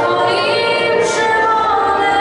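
A girl singing a song into a handheld microphone.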